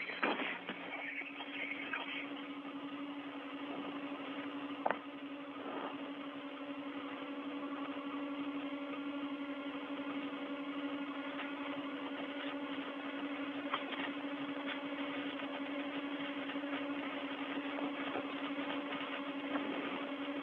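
Steady hum and hiss of an open spacewalk radio audio channel, with a constant low droning tone and a few faint clicks.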